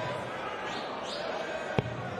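A steel-tipped dart thuds once into a bristle dartboard near the end, a single sharp impact over a low hall background.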